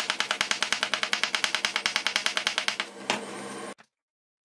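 Kitchen knife slicing a cucumber thinly on a wooden cutting board: rapid, even chopping strokes, about eight a second, ending with one last knock about three seconds in. The sound cuts off suddenly near the end.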